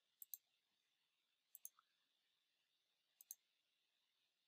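Three faint computer mouse clicks about a second and a half apart. Each is a quick double tick as the button presses and releases.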